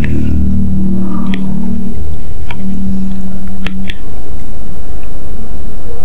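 Wooden fork and spoon working through a bowl of instant noodles in chili sauce, giving a few soft clicks and scrapes as the noodles are mixed and lifted, over a loud steady low rumble.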